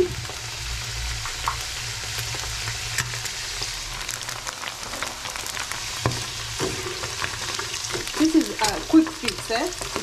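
Potato chips deep-frying in hot oil in a pan: a steady sizzle dotted with small crackles, over a low hum in the first half. A voice-like pitched sound comes in near the end.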